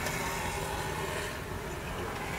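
Steady background rumble with a faint hiss over it, with no distinct events.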